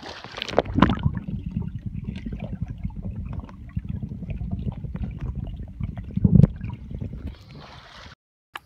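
A splash as a swimmer ducks under in a swimming pool, then the muffled, low rumbling and bubbling of water heard from a microphone under the surface, with a louder thump about six seconds in.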